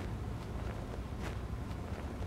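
A few soft footsteps and the rustle of a backpack being snatched up as a person hurries off, faint short ticks spread over the two seconds above a steady low room rumble.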